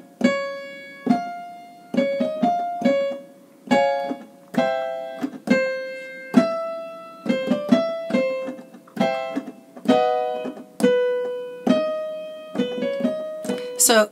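Piano accompaniment for a vocal scale exercise: struck chords alternating with quick runs of four short notes, the pattern repeating and stepping down in key as the exercise comes back down.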